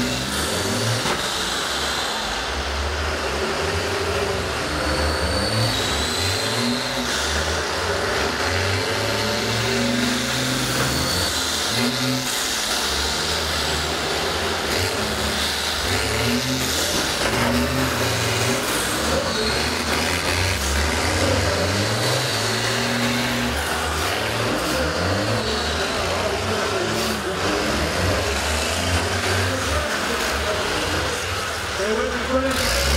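Several school bus engines running and revving, their pitch rising and falling as the buses drive about on the derby track.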